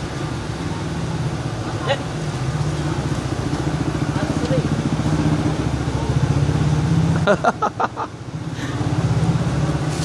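A motor vehicle engine running steadily with a low, evenly pulsing rumble, broken by a few sharp knocks about seven seconds in.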